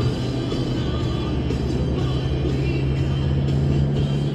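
1980s rock music playing on a car stereo, heard inside the cabin of a moving car over a steady low road and engine rumble.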